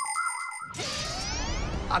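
Cartoon transition sound effect: a brief bright chime, then a rising sweep lasting about a second, marking the cut to the show's explainer segment.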